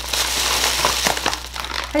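Packing material inside a cardboard shipping box crinkling and rustling loudly as hands dig through it, a continuous run of small crackles.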